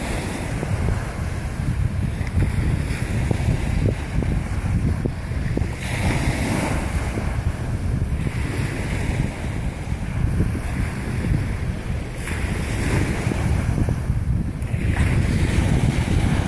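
Wind buffeting the phone's microphone, with surf washing on the beach behind it; the hiss of the waves swells up a few times.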